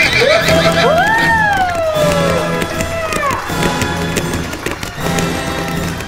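A horse whinny, a long neigh rising and then falling in pitch during the first few seconds, over background music with a steady beat.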